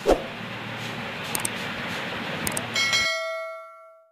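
Steady background noise, then a bright bell-like chime rings out about three-quarters of the way in and fades away: a subscribe-button notification sound effect.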